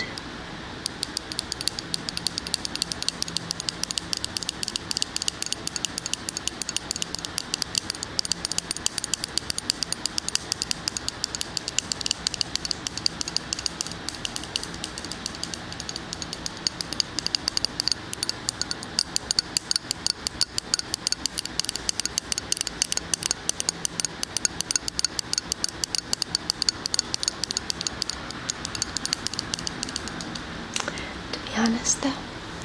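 Fingernails tapping rapidly on the lid of a Clinique moisturizer jar close to a binaural microphone: a quick, steady patter of light clicks.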